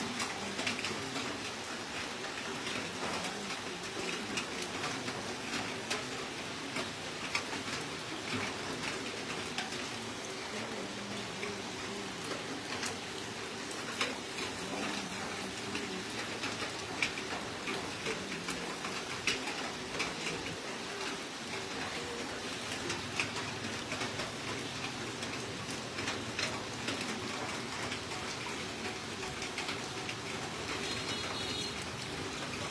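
Fat dripping from a whole pig roasting on a spit, crackling and popping on glowing charcoal: a steady patter of many small pops.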